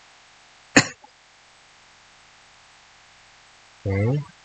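A single short cough from a man, about a second in, over a faint steady hiss of room noise.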